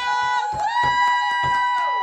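People clapping in quick, even claps while someone gives a long, high whooping cheer that slides down in pitch at its end, after a birthday candle is blown out.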